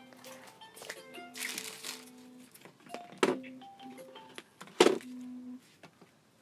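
Mobile phone ringtone: a simple melody of short steady notes at a few pitches, which stops shortly before the end. Handling knocks and rustles sound through it, with one sharp knock about five seconds in that is the loudest sound.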